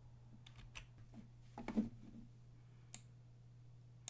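Faint computer mouse clicks and a few keyboard keystrokes, scattered and irregular, over a steady low hum.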